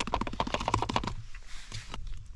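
Dehydrated-meal pouch and spoon being handled as the boiling water is stirred in: a quick run of small crinkly clicks and crackles for about a second, then quieter rustling.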